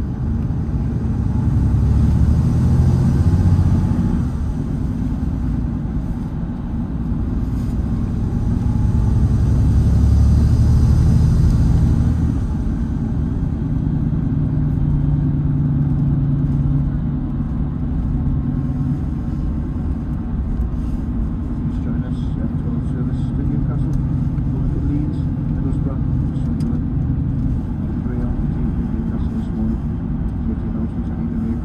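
Volvo B11RT coach's 11-litre six-cylinder diesel engine and road noise, heard from inside the passenger cabin while underway. The drone swells twice, a few seconds in and again around the middle, then settles into a steady low rumble.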